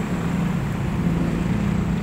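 A motor vehicle's engine running steadily nearby, a continuous low drone.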